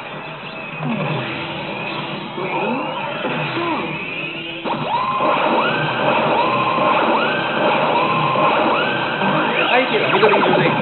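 Pachislot Zegapain slot machine playing its music and effects. About five seconds in, a louder run of repeated rising tones begins, the machine's fanfare for 15 more games being added to its AT bonus.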